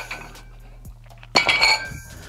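Cast-iron plates on a pair of dumbbells clanking together: a small clink at the start, then a loud ringing metal clank about one and a half seconds in.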